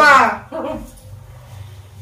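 A short, loud, high-pitched human cry that falls sharply in pitch, followed about half a second in by a quieter vocal sound.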